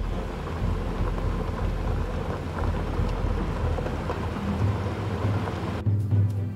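Tata SUV driving fast over a rough, dry field: a steady rumbling noise of engine and tyres on uneven ground.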